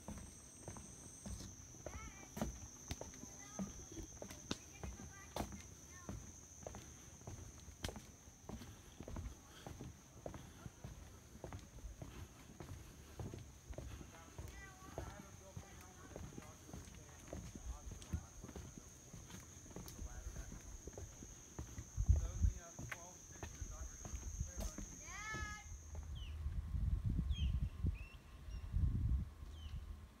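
Footsteps on a wooden boardwalk, a steady run of light thumps, under a steady high-pitched insect drone. The drone cuts off suddenly about 26 seconds in, and low wind rumble on the microphone follows.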